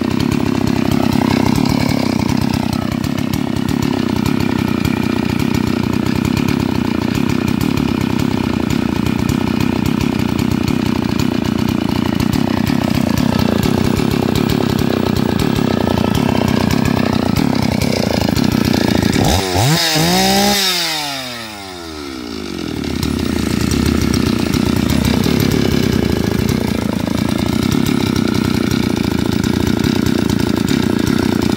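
Stihl MS 381 chainsaw's 72 cc two-stroke engine running steadily on a test run, with a short dip in level about two-thirds through.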